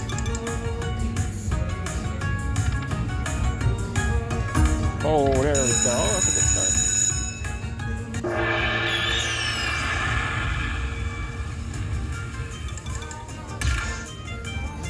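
Dragon Link slot machine playing its free-games bonus sounds: quick chiming notes and jingle music, a wavering tone and high ringing bells around the middle, then a rushing burst with falling tones as a fireball credit symbol lands on the reels. A steady low casino hum runs beneath.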